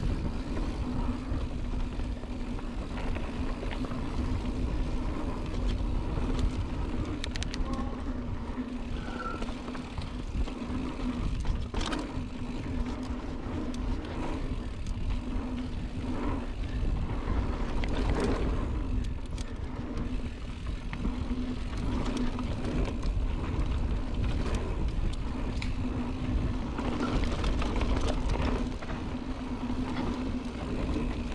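Mountain bike riding singletrack, heard from a camera on the rider: steady wind and trail rumble with a constant hum, and scattered sharp clicks and rattles from the bike over the rough ground.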